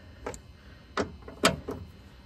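A few sharp metallic clicks from a ratchet and socket worked on the 10 mm mounting bolts of a Tesla frunk latch, the loudest about a second in and again half a second later.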